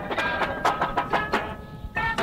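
A drum corps percussion section playing: quick, sharp drum strokes over ringing pitched notes from keyboard percussion.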